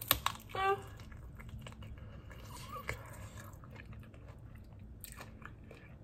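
A person biting into and chewing food held in the hands: quiet mouth and chewing sounds, with a few sharp bite clicks at the start and again about five seconds in.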